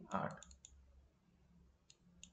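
A few light clicks of a stylus tapping a tablet screen while ink is written: a cluster about half a second in and one more near the end, after the tail of a spoken word.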